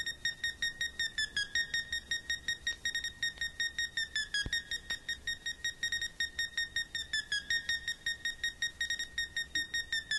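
Fast electronic beeping, about six high-pitched beeps a second, steady and alarm-like. It is a synthesizer pattern left bare in the breakdown of a dance track, with the beat and bass dropped out.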